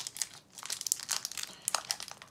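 Foil Pokémon booster pack wrapper crinkling and crackling close to the microphone as it is worked at to be torn open, in quick irregular crackles with a brief lull about half a second in. The wrapper is tough, hard to get into.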